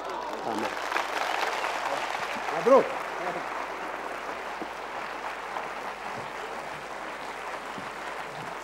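Studio audience applauding, a steady clapping that fills the whole stretch. One voice briefly calls out a little under three seconds in.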